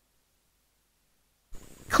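Dead digital silence for about a second and a half, then a narrator's voice begins near the end.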